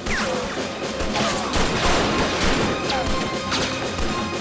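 Action-film soundtrack: a music score under a dense run of crashing and impact sound effects, with branches cracking as bodies force through shrubbery.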